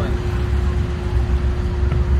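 Generators running steadily: a constant low rumble with a steady hum.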